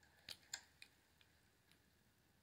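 Near silence with a few faint, short clicks in the first second and a couple of weaker ticks after.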